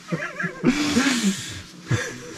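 A man's wordless voice laughing, wavering up and down in pitch, with a breathy hiss of about a second in the middle.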